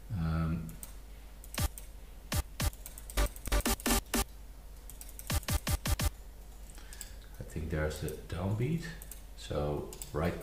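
Computer mouse and keyboard clicking, a string of sharp, irregular clicks coming in two quick clusters, then a man's low speech near the end.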